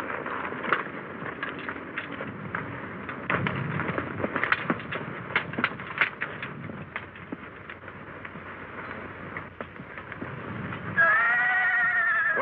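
Horses shifting and stepping, with many short sharp hoof clicks and knocks. About eleven seconds in, a horse gives a loud, high, wavering whinny.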